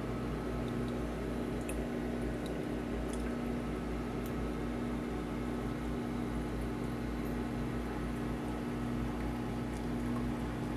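Reef aquarium's pumps humming steadily under a continuous sound of circulating water bubbling and trickling, with a few faint ticks.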